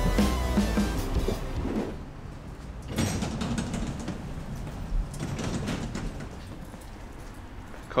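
Background music fading out over the first two seconds, then the passenger doors of a bus or tram opening with a sudden rush of mechanical noise about three seconds in, followed by cabin noise.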